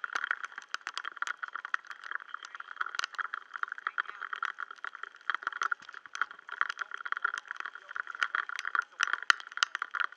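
Rain falling on the sea surface and on the camera, a dense, irregular crackle of many small drop impacts that runs on without a break.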